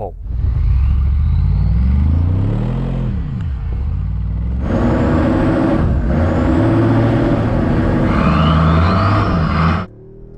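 Several 4x4 engines running at high revs under heavy load, straining against each other in a tug of war, the pitch rising and falling. About halfway through, more wind and tyre noise joins the engines, and the sound cuts off sharply near the end.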